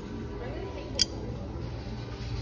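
A single sharp clink about a second in, a china collector plate knocking against the stack or shelf and ringing briefly, over a steady low hum.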